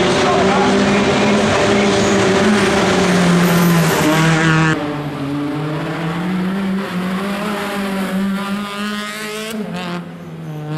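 Rally car engine revving hard under acceleration, its pitch climbing and dropping again and again with gear changes. For the first half it sits under a loud rushing noise that cuts off suddenly about halfway through, leaving the rising engine notes clear.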